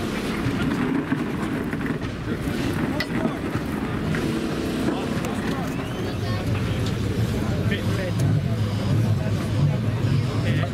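Indistinct voices chattering over the low steady running of car engines, the engine sound growing stronger in the second half.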